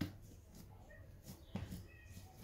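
Faint handling sounds of hands pressing and shaping a ball of bread dough on a granite countertop, with two short knocks, one at the start and one about a second and a half in.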